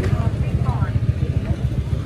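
Street noise in a market lane: a loud, steady low motorbike rumble, with voices talking faintly in the background.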